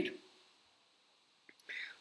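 The end of a man's spoken word, then a pause of near silence, then a small mouth click and a short breath in just before he speaks again.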